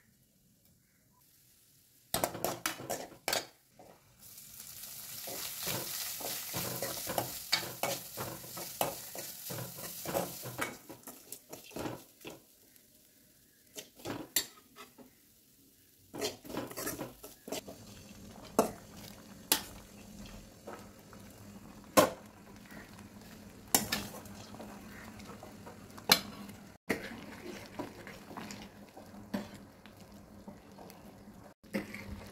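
Cashews and raisins frying in ghee in an aluminium kadai, sizzling for several seconds while a spoon stirs them with sharp clinks and knocks against the pan. In the second half, grated coconut stirred in the same pan gives quieter scraping with occasional spoon knocks.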